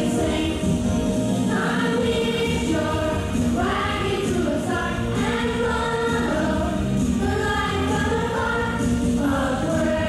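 Children's choir singing a song with instrumental accompaniment.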